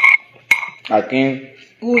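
Two sharp clicks about half a second apart, then a short low vocal sound from a person, and a person starting to speak near the end.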